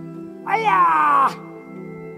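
Background music with steady sustained drone tones. About half a second in, a single loud wailing cry sounds for under a second, its pitch falling.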